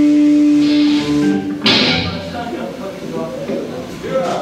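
Live rock band with electric guitar and drums ending a song on a held guitar note, cut off about a second and a half in by a final crash. Shouting voices from the hall follow.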